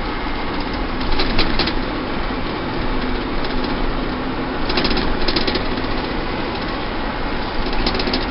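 Steady engine and road noise inside the cabin of a moving shuttle van, with a couple of brief higher hisses or rattles about a second in and about five seconds in.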